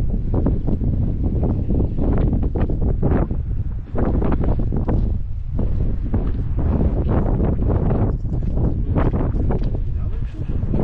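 Wind buffeting the microphone: a heavy low rumble that rises and falls in gusts, easing briefly about four seconds in.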